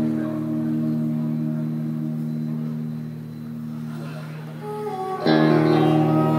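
Live symphonic metal band music: a sustained chord fades slowly, then a loud new chord comes in sharply about five seconds in.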